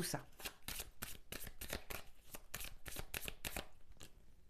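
A deck of oracle cards being shuffled by hand: a quick run of light card clicks, several a second, that stops shortly before the end.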